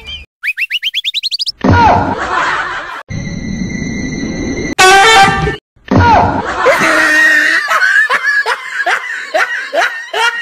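Edited-in cartoon sound effects: a quick run of about ten rising boing sweeps in the first second and a half, a short loud blast around five seconds in, and a laugh track with repeated bursts of laughter through the second half.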